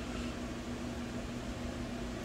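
Steady hum of running fans, with an even hiss and a low steady tone under it.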